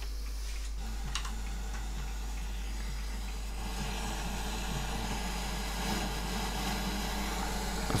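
Steady radio static hiss from a portable DVD boombox's FM receiver while its knob is turned and no station is tuned in, with a couple of faint clicks about a second in.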